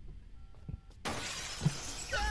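A glass window shattering as a man crashes through it. A sudden burst of breaking glass starts about halfway in and keeps going.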